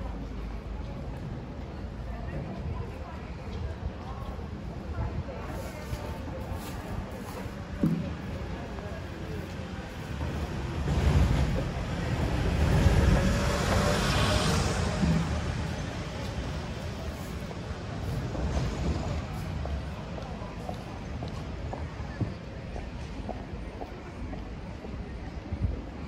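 Street ambience with indistinct voices of passersby. A small truck drives past about halfway through: the loudest sound, it swells over a few seconds and then fades away.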